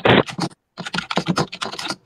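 Typing on a computer keyboard: a quick run of keystroke clicks, after a brief louder burst of noise at the very start.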